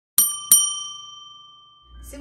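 A bell chime sound effect: two quick dings about a third of a second apart, the second ringing on and fading away over more than a second.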